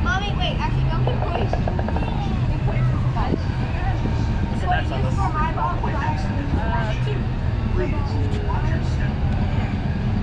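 Indistinct voices talking now and then over a steady low rumble.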